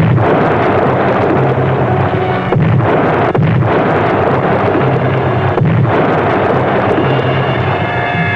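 Depth charges exploding underwater near a submarine, as a film sound effect: a loud, continuous rumbling blast with brief dips around two and a half, three and a half and five and a half seconds in.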